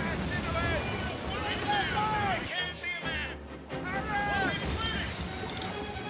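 Dramatic film soundtrack of a sailing schooner in heavy weather: wind and sea noise under music, with voices calling out in rising and falling cries.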